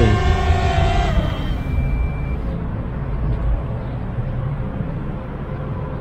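DJI Mavic Air quadcopter's propellers whining as it comes down onto a hand, the pitch briefly rising before the motors cut off about a second in once it has landed. A low rumble carries on after the motors stop.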